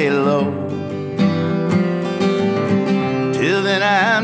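Acoustic guitar strummed in a steady rhythm with a man singing: a sung note trails off at the start, and he comes in with a new line, the voice wavering, near the end.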